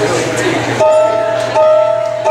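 Room chatter, then about a second in a live blues band with saxophone comes in on a held two-note chord, sounded twice with a short break between, the opening of the song.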